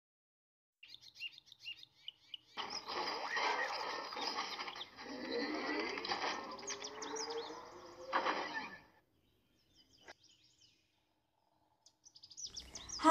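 Cartoon robot power-up sound effect: short high chirps, then a dense electronic whirring with rising sweeps that starts about two and a half seconds in and cuts off sharply after about five and a half seconds, followed by a shorter burst and a single click.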